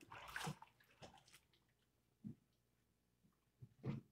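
Water sloshing and splashing in a church baptistry pool for about the first second and a half, then dying away. Two short, soft low thumps follow, one near the middle and a louder one near the end.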